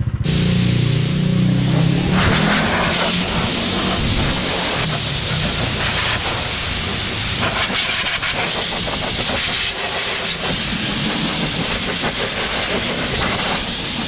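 Compressed air blasting from a wash-bay air pressure gun, a steady loud hiss as it blows water off a scooter's wet bodywork. A low hum sounds under it for the first two seconds.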